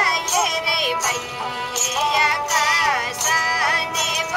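Ravanahatha, the bowed Rajasthani folk fiddle, playing a sliding, ornamented melody with a voice-like wavering tone.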